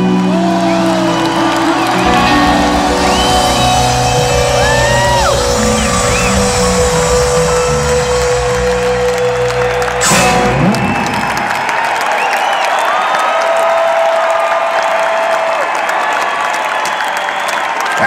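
Live rock band with electric guitars, bass and drums sustaining the final chords of a slow song, ending with a last crash about ten seconds in. An arena crowd then cheers, whoops and whistles.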